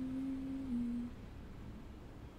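A woman humming softly: one held low note that steps down to a slightly lower note about two-thirds of a second in and stops after about a second, leaving only faint room tone.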